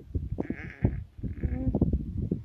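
A woman's brief wordless vocal sounds, breathy and wavering, with a short voiced hum near the end, over irregular soft knocks.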